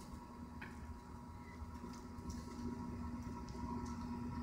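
Quiet indoor riding arena: a steady low hum with a few faint, irregular soft knocks.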